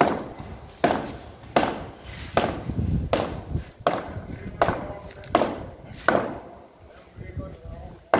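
Hammer blows on a chisel against a cracked cement-rendered wall, chiselling out the cracks to prepare them for repair. There are about ten even blows, roughly one every three-quarters of a second, some with a short metallic ring.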